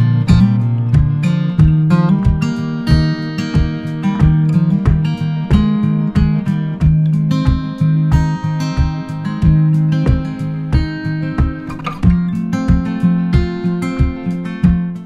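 Background music: an acoustic guitar playing a steady pattern of picked notes, several a second.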